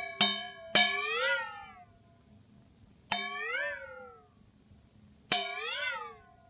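A stainless steel bowl holding a little water is struck four times with the end of a knife, each strike ringing like a bell. On the last three strikes the water is swirled and the ringing pitch swoops up and back down, a wobbling, almost musical sound.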